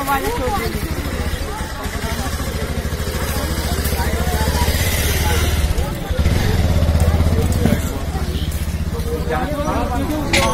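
An engine running nearby with a steady low rumble that gets louder for a couple of seconds in the second half. Voices of a crowd of onlookers are heard over it.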